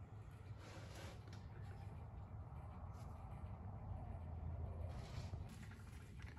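Quiet workshop room tone: a steady low hum with a few faint, brief, soft noises.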